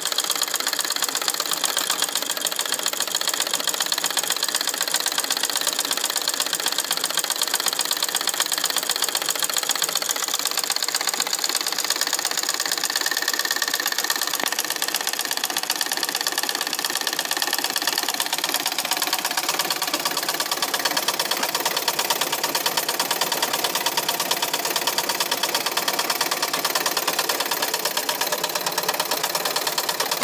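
Crosley treadle sewing machine, driven by a belt from the foot treadle, running steadily and stitching fabric: a rapid, even clatter of the needle mechanism that keeps up without a break.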